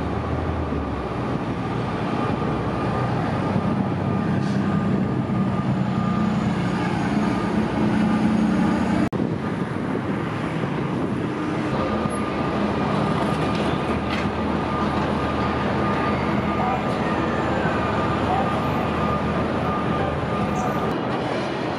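Steady downtown street noise: a continuous low traffic rumble with a hum and a thin high tone running through it. It cuts out for an instant about nine seconds in.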